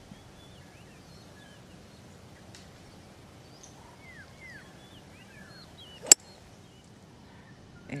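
A golf club strikes the ball off fairway turf: one sharp, crisp impact about six seconds in. It is solid contact, the ball struck cleanly.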